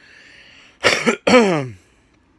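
A man coughing twice to clear a scratchy throat, the second cough dropping in pitch as it trails off; he thinks he is getting sick.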